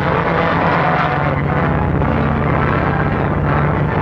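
Steady drone of engines: a propeller airplane flying overhead and a truck driving.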